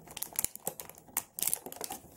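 Stiff clear plastic blister packaging crinkling and clicking as it is handled and pulled apart, in a run of irregular sharp crackles.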